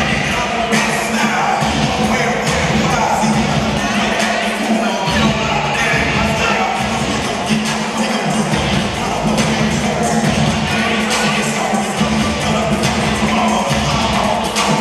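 Loud music played over an arena's sound system, with crowd cheering underneath.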